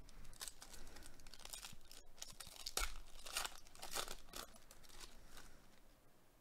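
A shiny wrapper on a baseball card pack is torn open and crinkled, making a string of short rips and crackles.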